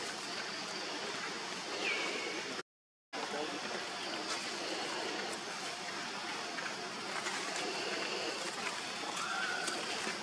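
Steady outdoor background hiss with a few faint, short high chirps. The sound drops out completely for about half a second near three seconds in.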